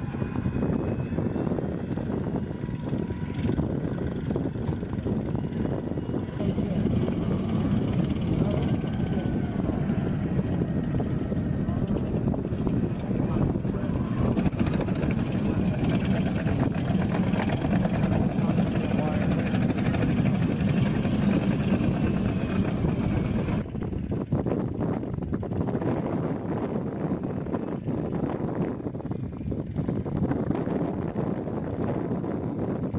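M1 Abrams tank driving over desert ground: a steady rumble of the gas-turbine engine and tracks. A faint whine wavers in pitch above it for much of the time and drops away about 24 seconds in.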